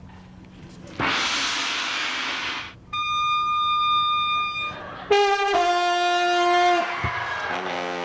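A tam-tam (gong) struck once about a second in; its wash rings for under two seconds and is cut off. Then an oboe holds one high steady note. Then a trombone plays loud, brassy notes, stepping down in pitch and ending on a lower note; it is the loudest of the three.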